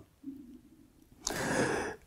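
A man's audible breath, a soft breathy rush lasting over half a second, starting a little past the middle, after a brief faint low hum.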